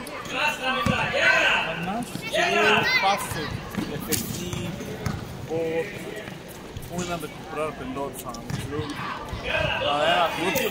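Basketball game in play: a ball bouncing and knocking on a hard court, with players and onlookers calling out over it.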